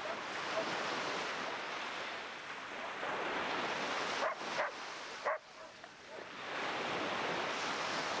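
Small waves washing up on a sandy shore, the surf swelling at the start and again near the end. A dog barks three times in quick succession about halfway through.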